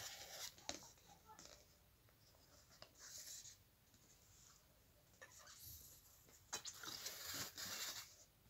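Faint rustling and scraping of an object being handled against the phone's microphone, with a few soft clicks near the start and a longer stretch of scuffing near the end.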